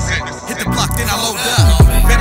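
Hip hop track playing: the heavy bass drops out for about a second and a half, then comes back near the end with deep falling bass-drum hits.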